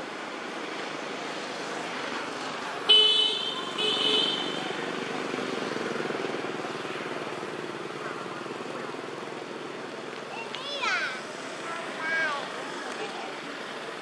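Two short blasts of a vehicle horn, the first sharp and loud, the second a second later, over a steady background of traffic-like noise.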